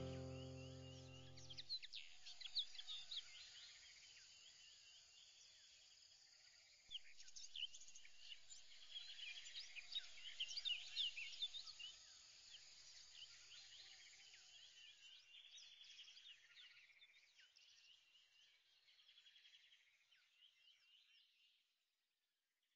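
Background music ending about two seconds in, then faint birds chirping in many short, quick calls that thin out and fade away near the end.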